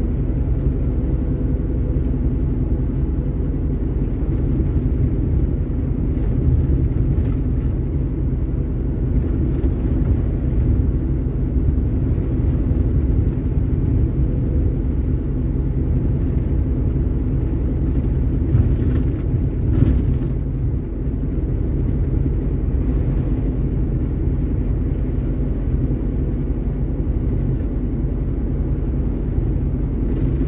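Heavy truck's diesel engine and road noise heard from inside the cab while driving at steady speed: a continuous low drone. There are a few brief light clicks or rattles about two-thirds of the way through.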